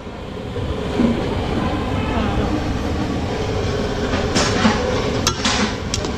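Steady rumbling roar of a stove under a large aluminium pot of simmering amaranth-tomato curry. Near the end, a metal spatula scrapes inside the pot and taps against it.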